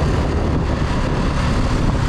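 Motorcycle riding along the road: steady wind rushing over the microphone with the engine running underneath.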